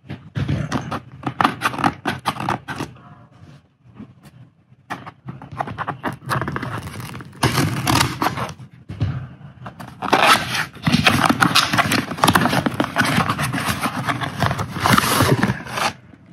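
Cardboard shipping box being opened by hand: the seal and tape scraped and torn and the cardboard flaps rubbing, in three stretches of rapid scratchy noise.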